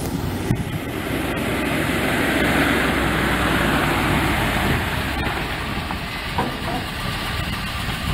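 A 1981 International F1924 grain truck's International 446 V-8 engine running as the truck drives up across gravel, with the tires crunching on the stones. The sound swells over the first few seconds as the truck comes close, with a few sharp clicks along the way.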